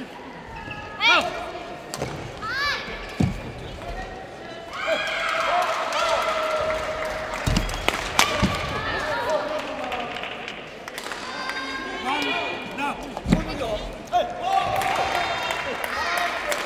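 Badminton rally on an indoor court: players' shoes squeaking on the court floor, sharp racket strikes on the shuttlecock, and low thuds of feet landing.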